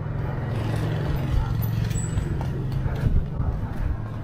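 A low, steady engine hum running nearby, fading near the end.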